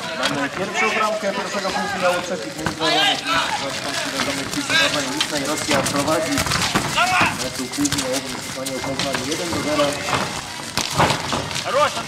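Several voices shouting and calling out at once, as players and onlookers at a street-football game. A few sharp knocks are heard, from the ball being struck.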